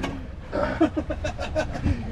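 A man laughing in a run of short chuckles, over the steady low rumble of the boat's outboard motors running.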